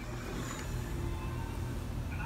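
A steady low hum in a small room, even and unchanging throughout.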